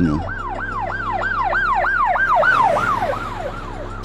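Electronic siren in fast yelp mode, its pitch rising and falling about three times a second and fading toward the end.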